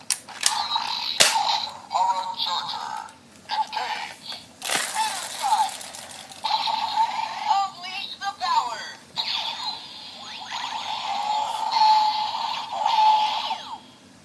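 Power Rangers Dino Charge toy gun playing its electronic sound effects through its small speaker: warbling, sweeping electronic tones, with a sharp click about a second in and a loud burst of noise about five seconds in.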